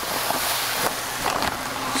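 Black aquarium sand pouring from a plastic bag into an empty glass tank, a steady hiss.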